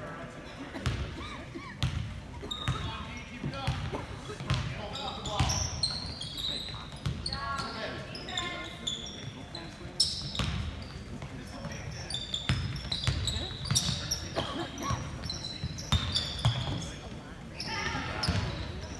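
Basketball bouncing on a hardwood gym floor in irregular thuds during play, with short sneaker squeaks as players cut and stop.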